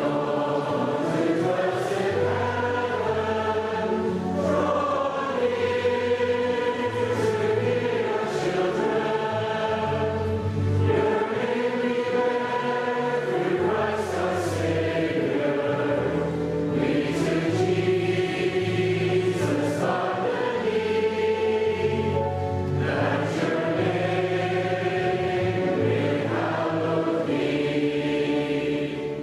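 Choral music: voices singing long, sustained chords over slowly changing low bass notes, at a steady level throughout.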